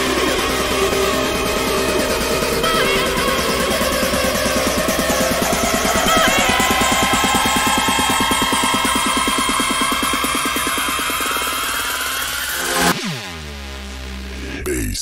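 Hardstyle electronic dance track: a fast pulsing bass under dense acid synth lines. A rising sweep builds through the second half, then the music breaks off suddenly into a thinner passage with a falling sweep about a second before the end.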